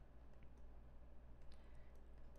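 Near silence: a few faint clicks from a stylus on a tablet as it writes, over a steady low electrical hum.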